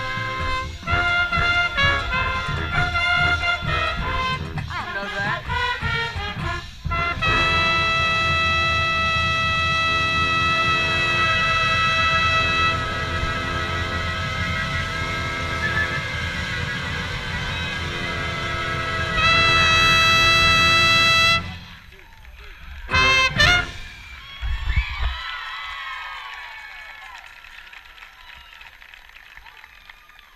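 Marching band brass and drums playing, with a trumpet close to the microphone. Long held chords build to a loud sustained chord that cuts off suddenly about two-thirds of the way through. A couple of short brass hits follow, then crowd cheering that fades away.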